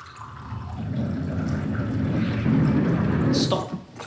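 A ball rolling down a long wooden ramp, its rumble growing louder as it speeds up, with water running from a barrel tap into a glass to time the roll; the sound drops away about three and a half seconds in.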